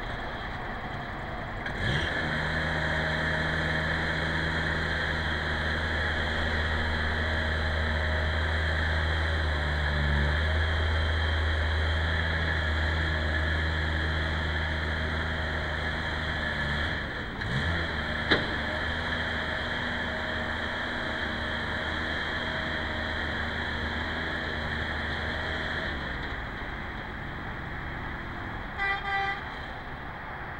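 An engine running steadily with a low, even hum, starting about two seconds in and stopping a few seconds before the end, with a short dip in the middle. A few short pitched blips come near the end.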